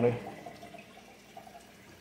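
Faint water trickling and splashing from a running reef aquarium's circulation, heard after a man's voice trails off at the start.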